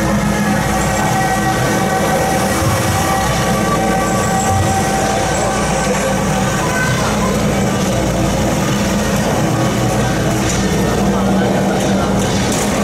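Continuous loud street procession din: a steady rumble with several long held tones and voices mixed in, and a few sharp hits near the end.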